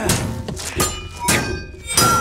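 Sword and shield blows in quick succession: about four heavy knocks, some with a brief metallic ring, over film score music.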